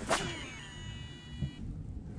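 A cast with a Shimano SLX DC baitcasting reel: a quick swish of the rod, then the high whine of the spinning spool and its DC brake, which lasts about a second and a half and then stops.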